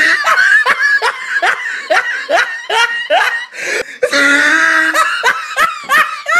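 A person laughing hard in quick repeated rising bursts, about three a second, breaking into a longer held laugh past the midpoint.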